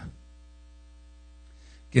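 Steady electrical mains hum from the recording chain: a low drone with faint higher overtones, heard in a gap in speech. A faint breath-like hiss comes just before the voice returns near the end.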